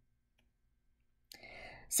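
About a second of near silence, then a mouth click and an audible intake of breath before speech resumes.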